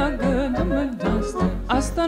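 Romanian folk song music: a quavering, ornamented melody line over a steady accompaniment.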